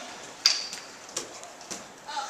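A few light knocks and taps in a quiet hall, one about half a second in and two more later, over low room noise.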